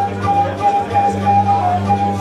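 Live flute playing one high note in quick repeated pulses, dipping briefly to a lower note near the end, over a steady low drone from the rest of the rock band.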